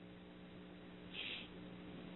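Low steady electrical hum on a telephone conference-call line, with one brief high-pitched noise a little after a second in.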